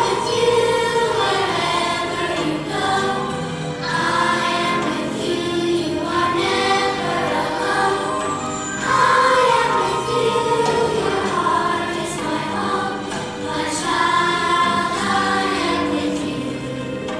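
A children's choir singing with musical accompaniment, in phrases every two to three seconds.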